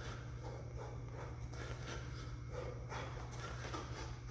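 A person shadow boxing barefoot: faint short breaths and feet shuffling on a mat, coming irregularly, over a steady low hum.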